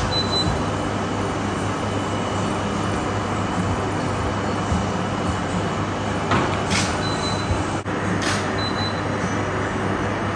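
A steady low hum with a rushing noise over it, broken by three brief sharp clicks, one at the start and two close together near the end.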